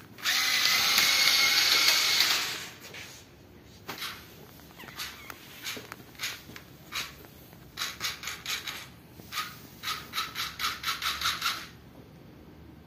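Small DC gear motors of a two-wheel robot car, driven by PWM, whining as the car runs: one steady run of about two seconds, then a string of short stop-start bursts that come quickly near the end.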